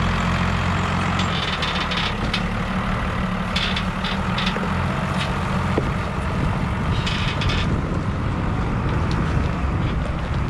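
New Holland M135 tractor's diesel engine idling steadily, with a few short bursts of hiss over it.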